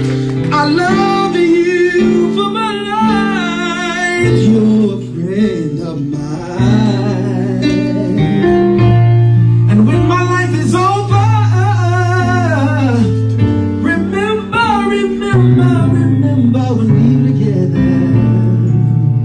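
A man singing a slow ballad into a handheld microphone, drawn-out wavering notes and runs with no clear words, over guitar accompaniment with sustained low bass notes.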